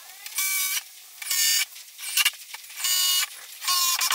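Cordless drill-driver running in four short trigger bursts of under half a second each, a steady motor whine, as it drives screws through a board into a plywood frame.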